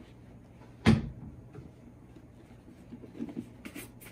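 A single sharp knock about a second in, then quiet, then short strokes of a brush rubbing over a leather boot resume near the end.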